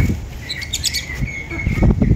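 Caged lovebirds chirping: a string of short, high chirps repeating through, over loud low rumbling thumps at the start and again near the end.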